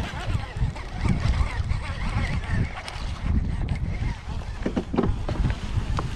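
Wind rumbling on the microphone, with handling noise from a baitcasting rod and reel as a hooked fish is played.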